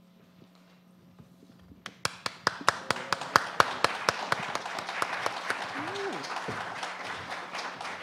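Quiet for about two seconds, then scattered hand claps that fill in to steady audience applause.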